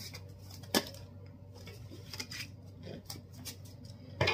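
Playing-style cards handled in the hands: one sharp click about a second in, then faint taps and rustles of cards, over a low steady hum.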